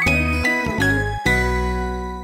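Short music jingle closing out a logo: a few bright notes over bass change about every half second, then a final chord is held and begins to fade.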